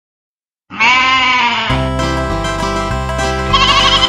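Silence for under a second, then a sheep's bleat as a cartoon sound effect, about a second long, followed by the start of an upbeat instrumental children's-song intro with a steady beat. A second wavering bleat sounds over the music near the end.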